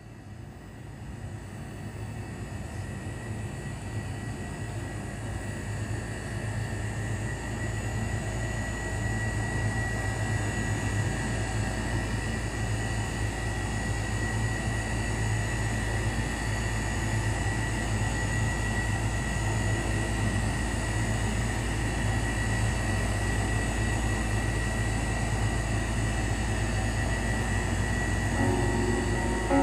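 A steady, low rumbling drone with a thin high whistle-like tone running through it. It fades in from silence and swells over the first several seconds, then holds level, like an aircraft or train cabin ambience used as the opening soundscape of a stage performance.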